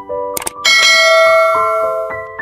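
A short mouse-click sound effect, then a bright bell chime for a notification bell, ringing out and slowly fading. Soft keyboard music plays underneath.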